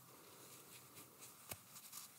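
Near silence: small-room tone with faint rustles and one soft click about one and a half seconds in.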